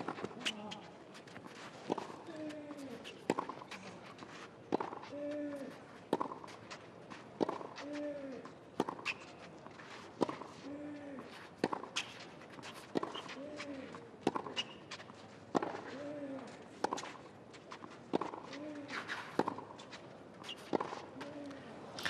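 Tennis ball struck back and forth on a clay court in a long baseline rally, a crisp racket hit about every second and a half, about sixteen in all. Many strokes come with a short grunt from the player hitting.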